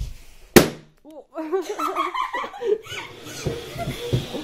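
A confetti balloon being pricked and bursting: one sharp, loud pop about half a second in.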